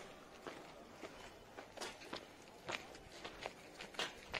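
Faint footsteps of several people walking on a paved road: shoes strike unevenly, a few steps a second.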